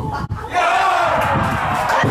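A crowd shouting and cheering at a goal, breaking out loudly about half a second in and held.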